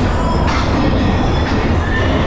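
Waltzer ride running at speed, heard from inside a spinning car: a loud, steady, deep mechanical rumble of the car and platform running on their track, with dance music faintly underneath.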